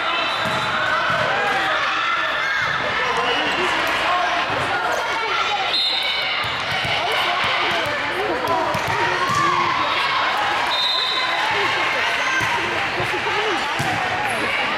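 Volleyball being bumped, set and bouncing on a hardwood gym floor in a string of sharp thuds, under steady overlapping chatter of many girls' voices. A couple of brief high sneaker squeaks come through, one about halfway and one near the end.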